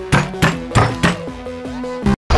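Background music with four sharp cartoon thunk sound effects about a third of a second apart, in the first second or so.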